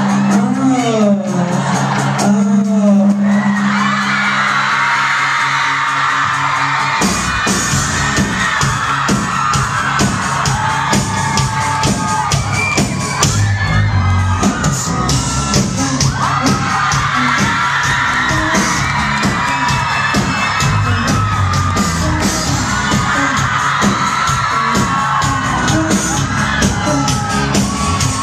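A live pop-rock band with a singer: sung vocals over sustained bass notes at first, then the full band with drums comes in loudly about seven seconds in and plays on under the vocals.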